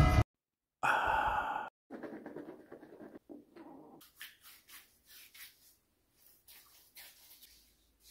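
A brief, loud pitched cry about a second in, then faint, quick rubbing strokes of a hand spreading shaving lather over a stubbly face, a few strokes a second.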